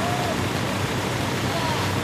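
Steady rushing background noise from the outdoor race feed, with faint traces of distant voices.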